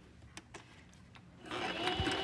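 A few faint clicks, then about one and a half seconds in a Singer Simple 23-stitch sewing machine starts and runs steadily, stitching the first step of an automatic buttonhole.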